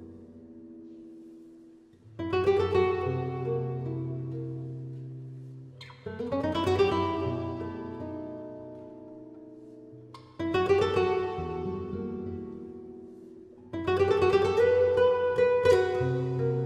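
Solo flamenco guitar playing a slow passage of four full chords about four seconds apart, each struck sharply and left to ring out and fade.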